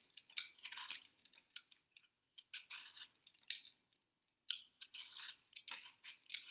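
Hand-held vegetable peeler scraping strips of skin off a firm green apple: about eight short, crisp strokes with brief pauses between them.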